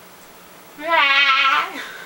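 One loud, wavering, bleat-like vocal call lasting about a second, starting a little under a second in, its pitch quivering throughout and lifting at the end.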